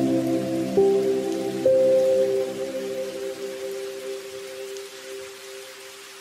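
Steady rain hiss under soft, slow music of long held chords. New notes come in about a second in and again near two seconds, then the music slowly fades.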